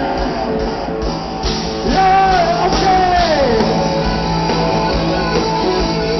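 Live rock band with electric guitars, accordion and drums playing loudly, with a long high note about two seconds in that slides down in pitch.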